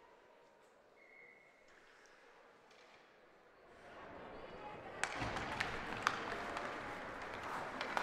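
Ice hockey faceoff: faint rink room tone, then rising scraping noise of skates on the ice and, from about five seconds in, sharp clacks of sticks on the puck and ice as the puck is dropped and contested.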